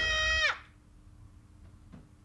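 A sustained high note is slowed to a stop about half a second in, its pitch dropping steeply before it cuts out, as in a tape-stop effect. Near silence with a faint low hum follows.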